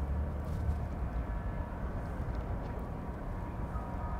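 Steady low rumble of outdoor yard ambience, with faint steady whining tones over it and no single distinct event.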